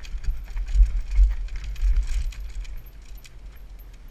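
Downhill mountain bike clattering over rocks: the chain and frame rattle with many sharp metallic clicks, over a low rumble of wind and bumps on the helmet-mounted camera. The rattling is busiest in the first two seconds and eases near the end.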